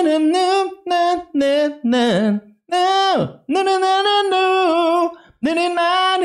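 A man singing wordless syllables a cappella in a high voice, a string of short held notes with vibrato, broken by brief pauses, illustrating the vibrato-heavy melodic vocal style he has just described.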